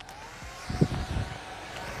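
Handheld hair dryer running, blowing air at the head with a steady whoosh and a faint whine.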